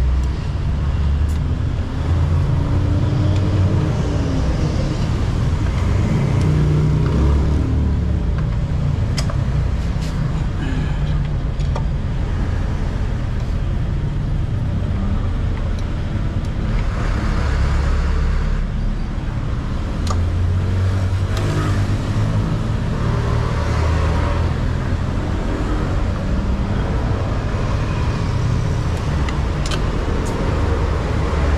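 Steady motor-vehicle engine and traffic noise, rising and falling in pitch in places, with a few light metal clicks of a T-handle wrench on the scooter's CVT cover bolts.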